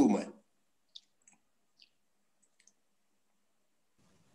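Near silence broken by a few faint, short clicks, scattered between about one and three seconds in.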